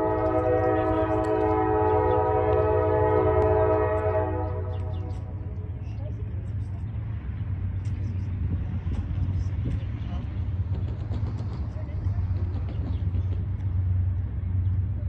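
Diesel freight locomotive's multi-chime air horn sounding one long, steady chord that lasts about four and a half seconds, followed by the low steady rumble of the approaching train.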